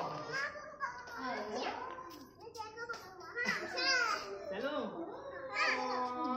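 Children's voices calling out and shouting to each other as they play. The cries swing up and down in pitch.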